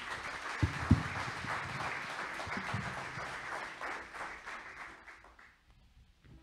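A congregation applauding after a hymn, the clapping fading out near the end. Two low thumps about a second in stand out above the clapping.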